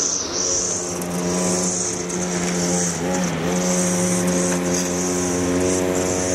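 Gas-powered string trimmer running at high speed with a steady, even drone, its pitch sagging briefly about halfway through as the line cuts into grass.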